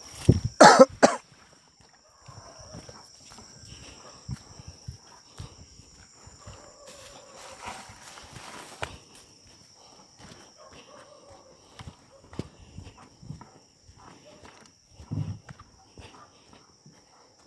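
Footsteps through grass and ground litter: scattered soft thumps and rustles, after a short loud burst about half a second in. A steady high-pitched tone runs underneath.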